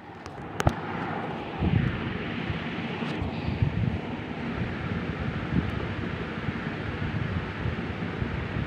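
Steady rushing noise with low buffeting on a phone microphone, like moving air blowing across it, with one sharp click under a second in.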